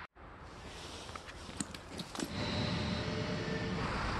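Outdoor background noise with a few light clicks, then from about two seconds in a car engine running close by with a steady low rumble.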